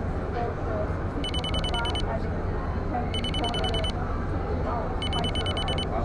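Electronic alarm beeping in three bursts of rapid, high-pitched pulses, each under a second long and about two seconds apart, over the chatter of a crowded exhibition hall.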